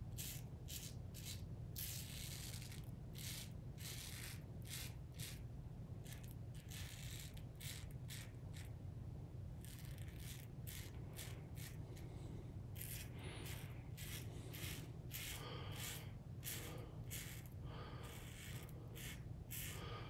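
RazoRock Gamechanger 0.68 safety razor with a Feather blade scraping through lather and stubble on the cheek in an across-the-grain pass: a run of short, crisp, scratchy strokes, about one or two a second and sometimes in quick clusters, heard faintly over a steady low hum.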